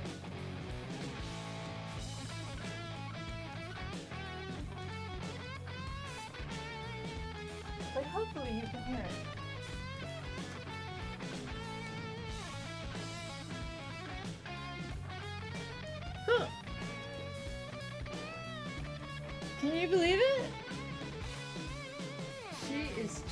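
Electric guitar music playing steadily from an online video, lead guitar lines over a steady backing, with a few louder notes that slide in pitch about 8, 16 and 20 seconds in.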